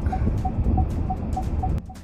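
A car's turn-signal indicator ticking about three times a second inside the cabin, over the low rumble of the engine and road. The ticking stops shortly before the end.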